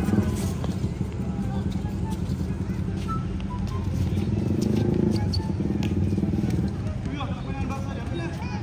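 Outdoor futsal game on a concrete court: a steady low rumble with voices in the background, a few faint knocks of the ball being kicked, and brief high squeaks near the end.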